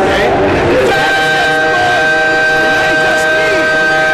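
Basketball arena crowd murmur. About a second in, a steady electronic tone made of several held pitches comes in over it and holds for a few seconds.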